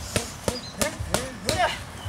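Boxing gloves striking leather focus mitts in a quick combination: five sharp smacks, about three a second. Short grunts from the puncher follow most of the strikes.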